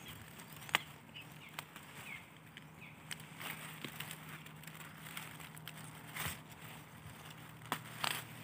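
Faint handling sounds of garlic mustard being picked by a gloved hand: soft rustling of leaves and stems, with a few sharp small snaps or clicks spread through.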